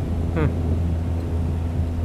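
A steady low engine drone with a constant hum, from a motor running nearby.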